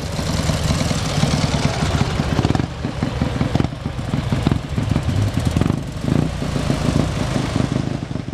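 Engines of military parade vehicles driving slowly past one after another: an old motorcycle with a sidecar, then a quad bike, then a military off-road vehicle. The engines make a steady rumble with rapid pulsing.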